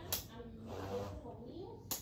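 Quiet, indistinct voices talking, with two sharp clicks, one just after the start and one near the end.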